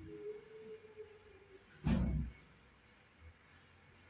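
A faint steady tone for the first second and a half, then a single short low thump about two seconds in, over quiet room tone.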